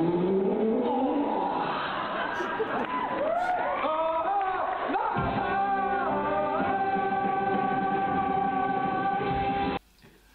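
A young male stage actor singing a song's ending note over the show's backing music. He slides up, wavers through several changes of pitch, then holds one long steady note for about three seconds. The sound cuts off abruptly just before the end.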